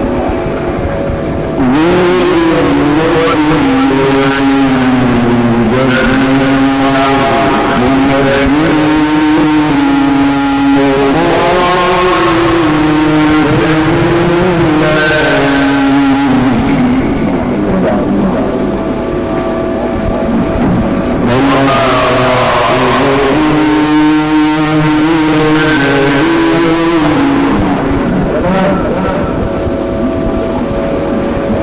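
A male Quran reciter chanting in the melodic mujawwad style: two long, ornamented held phrases with a pause of a few seconds between them, filled by steady background noise.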